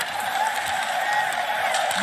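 Steady crowd noise from an ice hockey arena during play.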